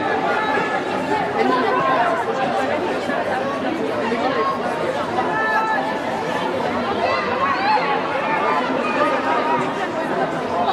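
Many overlapping voices chattering and calling out, a steady hubbub of people talking at once.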